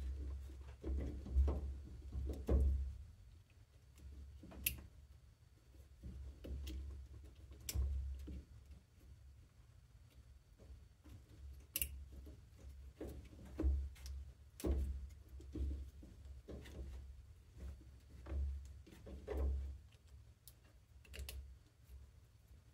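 Irregular sharp clicks and light knocks of plastic parts being handled: wire connectors pulled off and pushed onto washing-machine water inlet valves, with dull handling bumps underneath.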